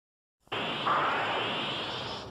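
Sound effect of a logo intro: after half a second of silence, a sudden loud rush of noise like static or a whoosh, with a faint rising sweep running through it.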